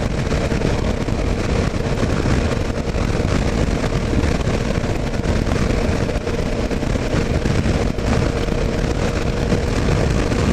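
Heavy wind buffeting on a helmet-mounted microphone while riding at road speed, over the steady running of a 2009 Kawasaki KLR 650's single-cylinder engine. The noise is dense and even, with a faint steady tone.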